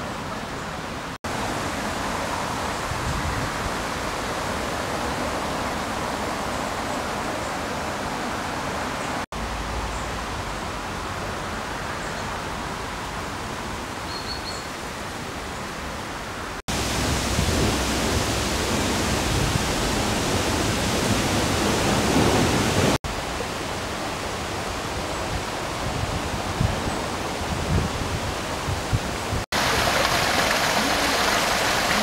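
Outdoor park ambience: a steady, hiss-like noise with no distinct events, whose level shifts abruptly several times and is loudest for a stretch in the middle.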